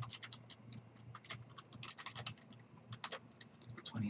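Computer keyboard being typed on: a faint, irregular run of key clicks as a short line of text is entered.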